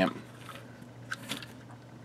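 X-Transbots Masterpiece Krank toy truck being rolled by hand across a surface: a faint rolling of its plastic wheels with a few small plastic clicks.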